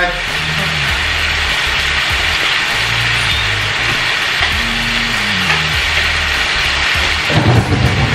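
Chopped onion, celery and garlic sizzling steadily in hot oil in a skillet as they sauté, with low bass notes of background music underneath.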